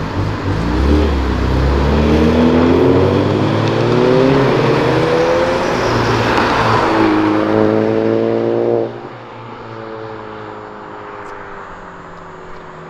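Car engines revving hard as cars accelerate away along a street: the engine note climbs steadily for several seconds, breaks, then climbs again. About nine seconds in it falls away sharply to a quieter, steadier engine note.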